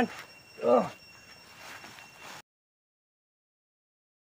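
A person's short vocal cry just under a second in, amid the scuffle. Faint outdoor background with a steady high thin tone follows, and the sound cuts off to dead silence about two and a half seconds in.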